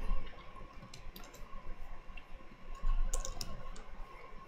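A few scattered clicks from a computer keyboard and mouse as code is copied and pasted, including a keyboard shortcut press near the end, over a faint steady tone.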